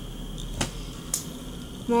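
Quiet handling of cut pieces of wax melt: two brief light clicks about half a second apart over a low steady hum.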